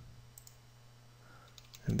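A few faint computer mouse clicks over a low steady hum, as dialog buttons are clicked; a spoken word begins right at the end.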